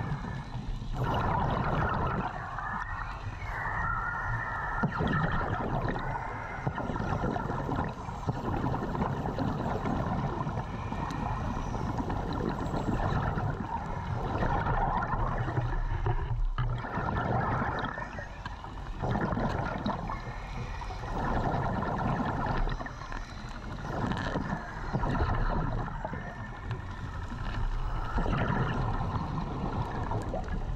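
A diver breathing underwater, each breath out sending a rush of bubbles past the camera, in a cycle of a few seconds that repeats through the whole stretch.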